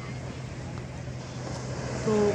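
Steady rushing noise of distant sea surf, with a steady low hum under it.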